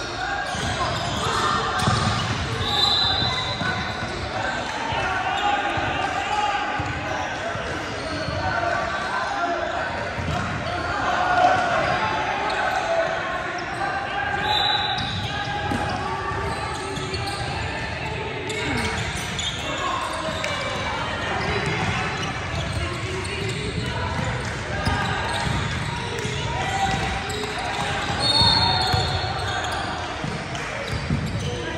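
Indoor basketball game in a large, echoing gym: players and spectators talking and calling out over a basketball being dribbled on the hardwood court. Three brief high-pitched chirps cut through, a few seconds in, about halfway and near the end.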